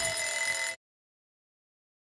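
A bell-like electronic chime rings out as the final held chord of closing music, one of its tones sliding slightly down. It cuts off abruptly about three-quarters of a second in.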